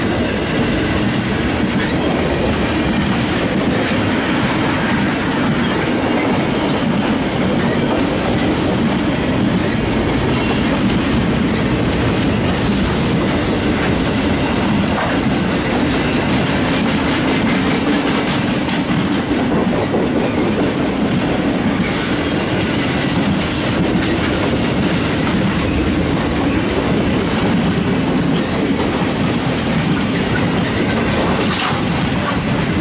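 Loaded flatcars and tank cars of a long freight train rolling past, a steady rumble and clatter of steel wheels on the rails.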